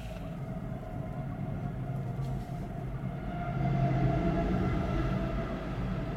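Double-stack container freight train rolling past: a steady low rumble of cars on the rails with a faint hum, growing louder about three and a half seconds in.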